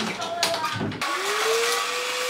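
A stick vacuum cleaner switches on about a second in: its motor whine rises in pitch and then holds steady over a rush of air.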